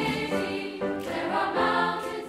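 Youth choir singing sustained notes, the pitch moving every half second or so.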